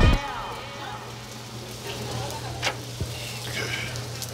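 Meat sizzling in a barbecue pit: a steady hiss over a low hum, with a few sharp clicks.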